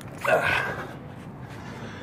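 A short voice-like sound about a quarter second in, then steady low background noise.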